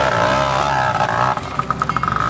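Small dirt bike engine running and revving, its pitch climbing and dipping, then breaking into short rapid pulses near the end.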